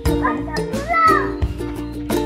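Upbeat background music with plucked-string notes and a steady beat. A child's voice calls out briefly about a second in.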